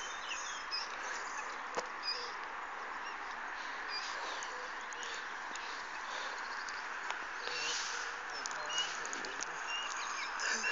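Birds calling now and then over a steady outdoor hiss, with a single sharp click about two seconds in.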